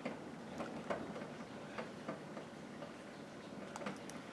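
A few faint, irregular small clicks and ticks close to the microphone, spaced unevenly over the few seconds.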